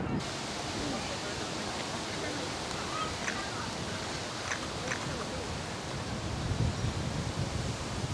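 Steady outdoor background noise, an even hiss with a few faint ticks about halfway through.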